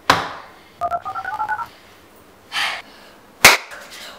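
A knock, then a quick run of about eight short two-note electronic beeps climbing in pitch, like keys pressed on a control keypad. A brief hiss follows, and a sharp, loud click or switch near the end.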